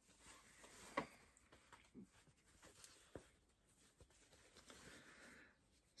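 Near silence, with a few faint clicks and light rustles of fabric and a zip being handled; the clearest click comes about a second in.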